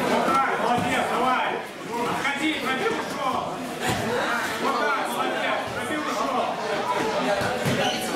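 Overlapping voices of coaches and spectators calling out and chattering in a large gym hall, with a couple of short thumps.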